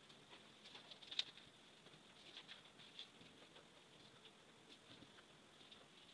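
Near silence, with faint scratching and soft ticks of pattern paper being handled and a marker drawing on it as lines are traced; one sharper tick about a second in.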